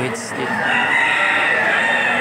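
A rooster crowing: one long crow beginning about half a second in, over the hubbub of a crowd.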